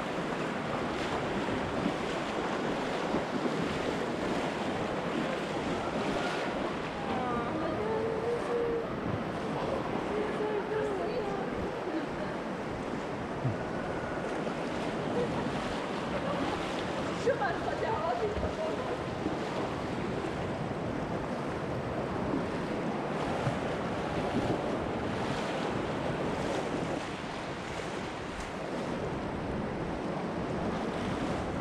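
Steady rush of a fast, shallow river current, with splashing from people wading through it. Faint voices come through a little way in and again past the middle.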